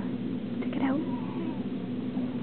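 Newborn baby giving a brief meow-like squeak about a second in, sliding in pitch, over a steady low hum.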